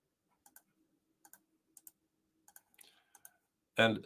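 Faint clicks from computer use, mostly in close pairs about every half second to second, with a faint low hum in the first half.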